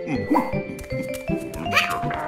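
Cartoon dog barking in short yapping calls, twice, over background music.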